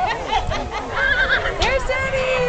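A horse whinnying, a quavering call about a second in, over the chatter of a crowd of people.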